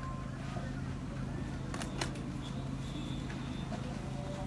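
A steady low hum under faint murmuring voices, with two short sharp clicks about two seconds in.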